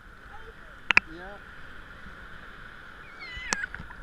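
Water lapping and sloshing around an action camera held at the sea surface, with two sharp knocks on the camera, about a second in and near the end. Short voice-like calls come in between.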